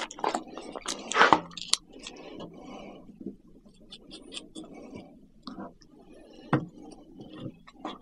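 Small handling noises as a tempered-glass screen protector is fitted onto an Insta360 action camera's lens: light scrapes and rustles of backing film, with a few sharp clicks.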